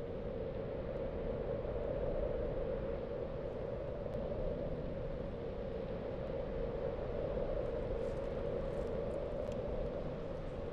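A steady rumbling noise with a hum-like band in the low-middle range, unchanging throughout.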